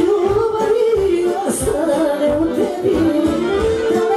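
Live band music: a woman singing an ornamented melody into a microphone over accordion accompaniment, with a steady bass beat.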